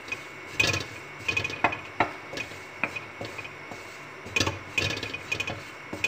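Wooden spatula scraping and stirring a crumbly butter-and-flour roux around a metal pan, in a series of irregular strokes as the flour is cooked in the butter.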